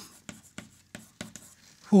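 Chalk writing on a blackboard: a string of short, irregular taps and scrapes as words are written out in chalk.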